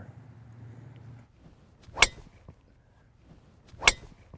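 Driver head striking a golf ball off a tee: a short, sharp click about two seconds in, and a second similar click just before the end.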